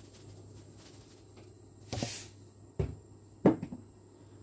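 Kitchen handling sounds: a short rustling hiss about two seconds in, then two sharp knocks of kitchen items against a hard surface near the end, the second the louder.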